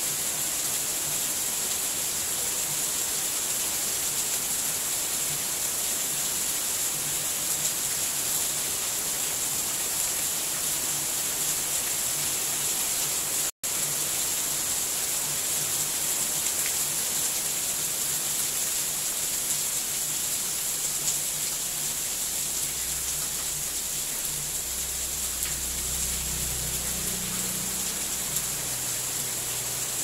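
Steady high hiss with a few faint clicks, cutting out completely for an instant about halfway through.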